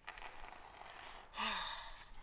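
Liquid nitrogen poured from a dewar onto the floor, hissing faintly as it boils off into fog. About one and a half seconds in, a louder breathy sigh with a short falling voice rides over it.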